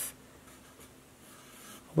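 Faint sound of a felt-tip marker drawing on paper.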